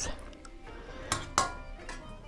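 Two quick clinks of a metal cooking utensil against a stainless steel pot about a second in, a third of a second apart, as pieces of boiled chicken are lifted out. Faint background music runs underneath.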